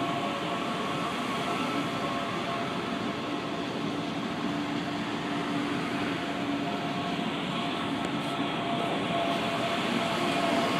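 CPTM Série 8500 CAF electric multiple unit running past as it arrives at the station: a steady rumble of wheels on rail with a few steady high tones held over it, growing slightly louder near the end.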